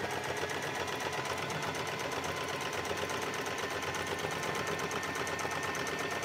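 Electric domestic sewing machine running steadily at speed, stitching a seam, with rapid even needle strokes over a steady motor whine.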